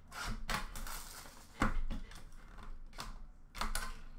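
Packaging of a trading card box being handled and opened by hand: a run of crinkly plastic and cardboard rustles and clicks, with sharper snaps about a second and a half in and again near the end.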